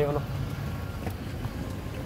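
Steady low hum of an idling car engine, under a man's single spoken word at the start.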